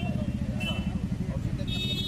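A man's voice speaking over a steady low rumble, with short high steady tones twice, about half a second in and again near the end.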